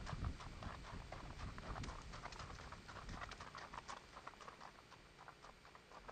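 Hooves of a Tennessee Walking Horse crunching on gravel at a walk, a quick run of sharp steps that grow sparser and quieter as the horse comes to a stop near the end.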